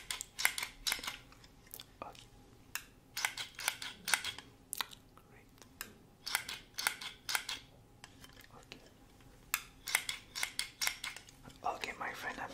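Close-up ASMR trigger sounds: quick crisp clicks and crunches in about five short bursts with pauses between. They are the test sounds of a left-or-right hearing check.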